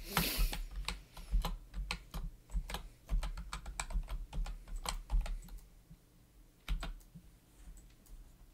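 Computer keyboard keys being typed in a quick run of clicks while a password is entered at a sudo prompt. After a pause, one more key press comes about seven seconds in.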